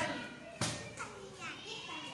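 Children's voices and chatter, with one sharp knock a little past half a second in.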